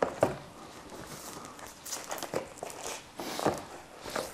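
Large sheets of fine art inkjet photo paper being handled and slid across a tabletop: a few short rustles and soft scrapes.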